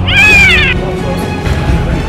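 A single high-pitched meow, rising then falling in pitch and lasting under a second, heard over background music.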